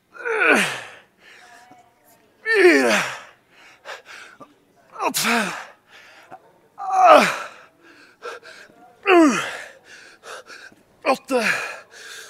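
A man's loud, strained vocal exhalations, each falling in pitch, come about once every two seconds with quick gasping breaths between them. This is the effort of each rep near the end of a 100-rep set of leg extensions.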